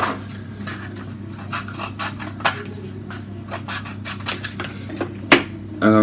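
Scissors cutting a cardboard toilet-paper tube: a run of scratchy cuts and small clicks, with two sharper snips about two and a half and five seconds in.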